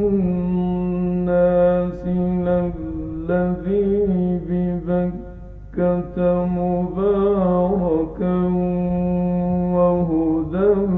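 A man reciting the Quran in the slow, melodic mujawwad style, holding long, ornamented notes. He breaks off for a breath about five seconds in, then resumes on another long held line.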